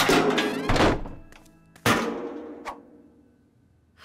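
Cartoon sound effects over background music: a loud rush of sound in the first second, then one hard thunk about two seconds in that dies away.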